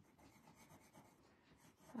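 Faint scratchy rubbing of a white chalk pencil drawn in short strokes over a black drawing tile.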